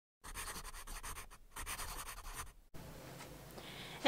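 Pen scratching on paper in quick strokes, writing out a handwritten signature: two runs of about a second each, ending abruptly, then faint room hiss.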